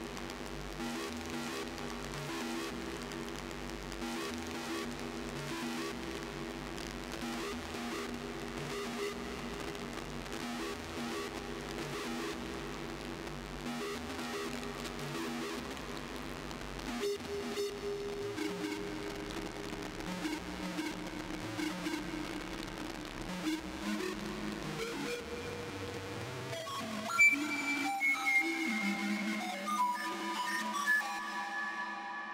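Live dark electronic (witch house) music played on synthesizers: a sustained droning chord over a low pulse, with a hiss of noise on top. About seventeen seconds in the drone shifts, and near the end higher held tones come in and it gets louder.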